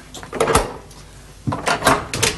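Knocks and clatter of a wooden shop door being handled: a couple of light knocks about half a second in, then a louder clattering rattle near the end.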